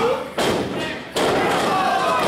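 A wrestler's body landing heavily on the wrestling ring's mat in a splash onto a prone opponent: a sharp thud a little over a second in, with a lighter knock before it. Crowd voices carry on around it.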